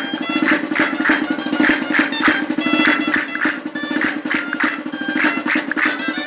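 Gaitas, Riojan double-reed folk shawms, playing a lively folk tune with a reedy sustained tone, while castanets click along in a quick, steady rhythm several times a second.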